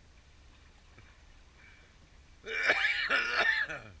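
A man laughing hoarsely, one short burst of a few breaths about two and a half seconds in.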